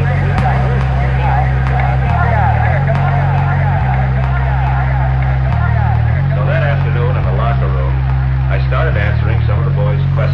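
Electronic dance track (dubstep/electro): deep sustained bass notes that shift pitch every second or so under a warbling, voice-like higher part that bends up and down.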